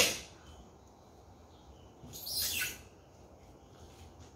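Packing tape being pulled off the roll and torn while a cardboard box is sealed: a short sharp rip at the start, then a longer, high-pitched screech of tape unrolling a little after two seconds in.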